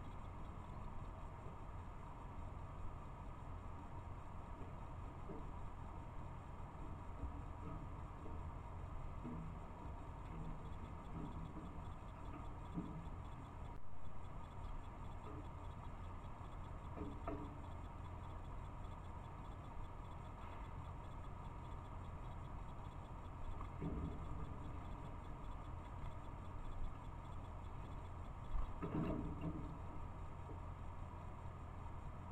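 Steady hiss and hum of a trail camera's microphone with a faint steady whine, broken by a few faint short sounds, the strongest near the end.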